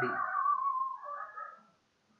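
A high animal cry, most likely from a pet, falling in pitch over about a second, then a shorter second cry.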